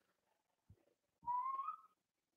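A short whistle about a second and a quarter in: one brief note, rising slightly in pitch, lasting about half a second.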